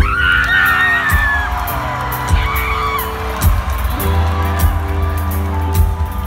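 Live rock band playing in an outdoor amphitheatre: acoustic guitar, electric bass held on long low notes, and a drum kit ticking on the cymbals. A fan near the phone whoops over it in the first second or so.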